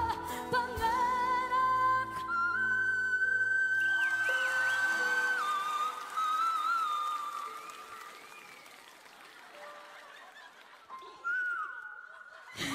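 Female pop singer belting a ballad live into a microphone over a backing track. The accompaniment drops out about three and a half seconds in while she holds a long, high note with vibrato, which then falls to a lower note and fades. A short sung phrase returns near the end.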